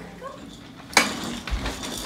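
A toddler's plastic push walker on a wooden floor: one sharp clack about a second in, followed by a few soft low bumps as it rolls and knocks.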